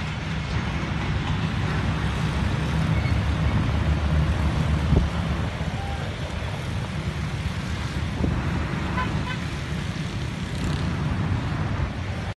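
Steady low outdoor rumble of traffic noise, with a brief louder swell about five seconds in.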